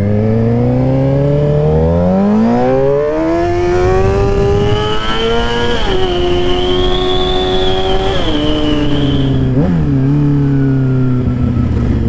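Sportbike engine accelerating hard from a turn, revs climbing steadily for about six seconds, then dropping in steps as the rider rolls off and downshifts. There is a quick rev blip near the end before it settles lower. Wind noise on the helmet-mounted microphone runs under it.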